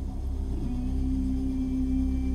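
Background score music: a steady sustained drone, with a held low note coming in about half a second in.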